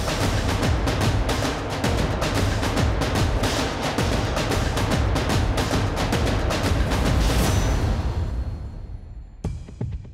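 Suspense music built on a rapid drum roll, holding steady and then fading out near the end.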